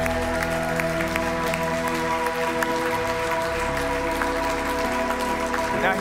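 Congregation applauding over background music of held chords, the bass note changing a few seconds in.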